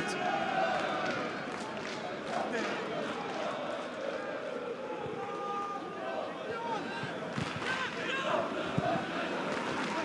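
Football stadium ambience: scattered shouts from players and spectators over a steady crowd background, with a few sharp thuds of the ball being kicked late on.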